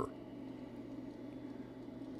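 Steady low hum of a K40 laser cutter's machinery running, with no change through the pause.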